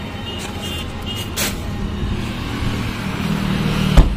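Road traffic passing close by, motorcycles and cars, the noise swelling as a vehicle approaches near the end. A short sharp click comes about a second and a half in, and a loud thump right at the end.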